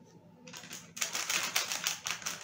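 Plastic snack wrappers crinkling as they are handled, a fast crackling that grows loud about a second in.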